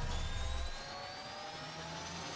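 Synthesized riser sound effect for an animated intro: a noisy whoosh with several tones gliding slowly upward. A low rumble under it fades out under a second in.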